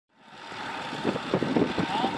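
Pickup trucks driving along a dirt road, a steady run of engine and tyre noise that fades in over the first half second.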